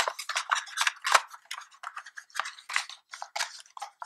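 Small beauty sample packages being handled in a cardboard box: a quick, irregular run of light clicks, taps and rustles as the items are moved about.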